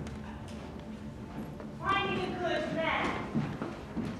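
A person's voice making a wordless pitched vocal sound about two seconds in, lasting about a second and a half.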